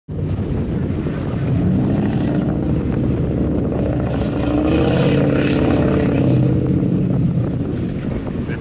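Rescue boat's engines running with a steady drone as it turns on the spot, the pitch swelling and dipping around the middle, with water churning under the hull.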